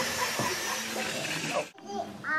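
Faint voices in the background over a steady hiss. Near the end the sound drops out completely for an instant.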